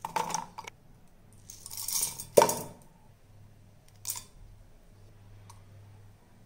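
Garlic cloves, ginger and whole spices being dropped into an empty stainless-steel mixer-grinder jar: a few clinks, then a short rattling pour of seeds and a sharp clank about two and a half seconds in, with another clink around four seconds.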